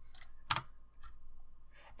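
A single sharp computer-keyboard key click about half a second in, with a few fainter clicks around it, over a low steady hum.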